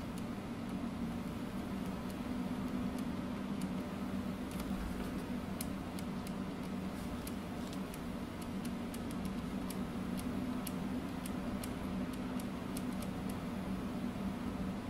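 Steady low hum over a soft hiss, with faint light ticks scattered through that come more often in the second half.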